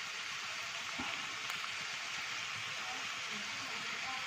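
Pork pieces and onions sizzling steadily as they fry in an aluminium pan.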